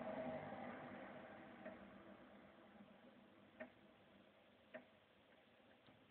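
Near silence: faint room hiss that fades away, with three soft, short clicks spread through the middle.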